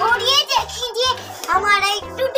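A young child's high-pitched voice chattering and calling, over background music with a stepping bass line.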